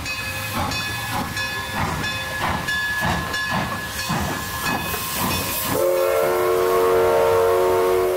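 Steam locomotive chuffing steadily, a little under two beats a second. About six seconds in, a loud multi-tone steam whistle starts blowing and holds.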